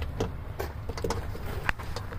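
Handling noise from a test-lead probe being moved at the door wiring: a few light clicks over a low steady rumble.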